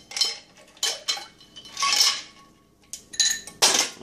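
Ice cubes poured from a measuring cup into a blender jar, clattering and clinking in several short bursts, loudest about two seconds in and near the end.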